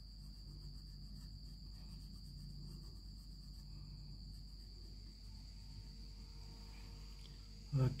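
Faint steady high-pitched whine with a low hum beneath it, under the quiet scratch of a coloured pencil shading on a workbook page.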